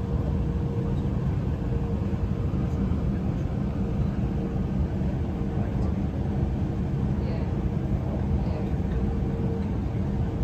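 Steady rumble of an electric passenger train running along the track, heard from inside the carriage, with a steady whine sounding under it.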